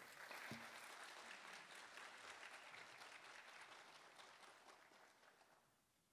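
Audience applauding, faint and spread out, with the applause fading away about five and a half seconds in.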